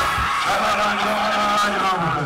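Loud live concert sound from the stage PA: music with held notes and a crowd cheering and screaming. The bass beat drops out about half a second in, leaving sustained tones under the crowd noise.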